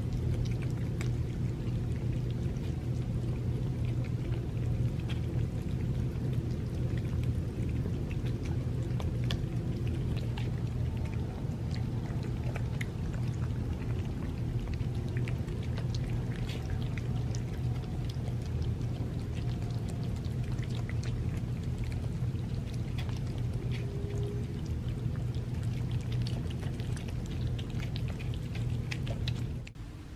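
Several cats eating wet tuna cat food in broth from paper plates, close up: wet chewing, licking and smacking as many small irregular clicks, over a steady low hum.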